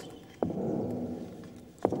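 Footfall sound effects of a giant troll: two heavy thuds about a second and a half apart, each dying away slowly.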